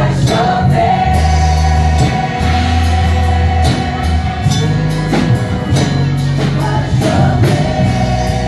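A women's choir with lead singers on microphones singing a gospel worship song, amplified through a PA, over a sustained bass line and light percussion.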